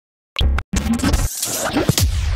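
Short electronic music sting with DJ-style record-scratch effects and deep bass. It starts abruptly after a moment of silence, with a brief break just after half a second.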